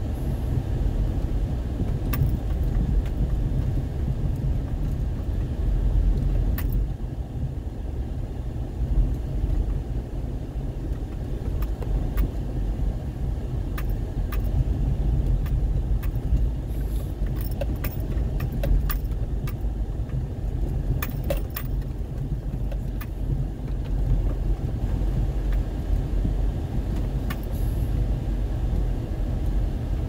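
Inside a car driving slowly over an unpaved sandy road: a steady low rumble of engine and tyres, with scattered light clicks and rattles, most of them bunched about two-thirds of the way in.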